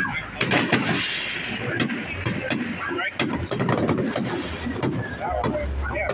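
Aerial fireworks bursting: many sharp bangs in quick, irregular succession. Through a phone's microphone they come out as hard cracks like gunshots.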